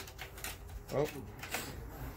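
Light clicks and rattles of a plastic gauge-pod bezel and a gauge's mounting hardware being handled and screwed together by hand. A short spoken "oh" comes about a second in.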